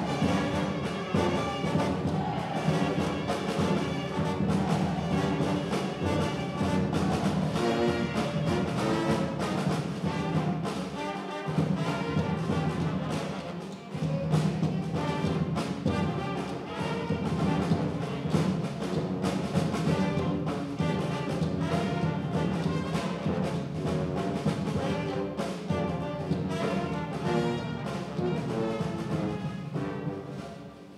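New Orleans-style brass band playing an up-tempo number: trumpets, trombones and saxophones over a sousaphone bass line and snare and bass drums. About halfway through the sound thins for a moment before the full band comes back in, and it tails off near the end.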